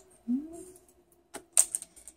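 A short hummed 'mm' from a voice, then a couple of sharp clicks as a plastic pacifier on a homemade lace clip is handled and tugged to test its hold.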